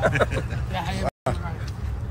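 Faint, broken men's voices over a steady low rumble, with the sound cutting out completely for a moment a little over a second in.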